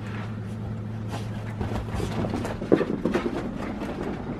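Two dogs play-fighting on a fabric sofa: irregular scuffling and short snuffling noises, with a louder flurry a little under three seconds in, over a steady low hum.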